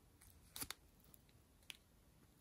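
Near silence broken by a short crinkle of plastic drill bags, holding square diamond-painting drills, about half a second in, and one faint click later.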